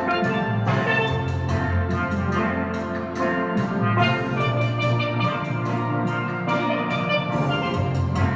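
Steel pan music: quick, repeated struck notes ringing out on steel pans over a steady bass line.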